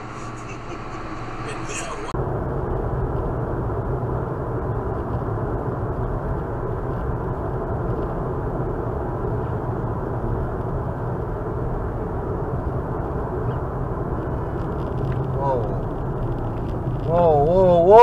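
Steady road and engine noise inside a car cruising on a highway, heard through a dashcam microphone, muffled and without high tones. The sound changes abruptly about two seconds in, and a voice begins near the end.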